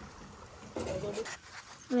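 Shallow stream running faintly over stones, a soft steady wash of water, broken about a second in by a short voice sound.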